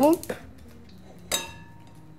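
A single clink of a metal utensil against a small glass bowl, ringing briefly in a few clear tones.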